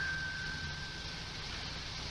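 Steady background hiss and low hum of an old 1950s recording, with a faint thin high tone that fades away.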